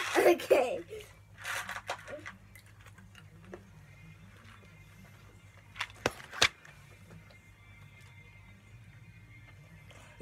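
Faint music, a low wavering melody, leaking from headphones, with a cluster of three or four sharp clicks about six seconds in. Brief voice and laughter sounds in the first two seconds.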